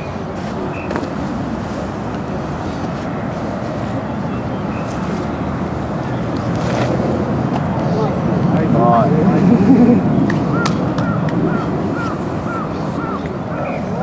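Outdoor ambience of people talking in the background, with a louder stretch of voices a little past halfway and a run of short, repeated high chirps, about two a second, near the end.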